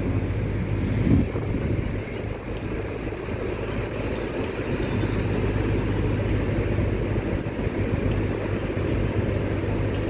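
Large diesel coach engines running steadily with a low hum, as buses idle and one drives slowly across the terminal apron.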